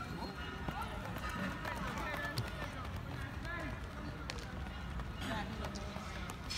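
Faint, distant voices talking over a steady low background, with a few light clicks.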